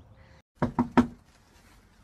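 Three quick knocks on a door, about a fifth of a second apart, the last one loudest.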